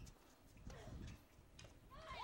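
Near silence: faint ambience with a few soft clicks.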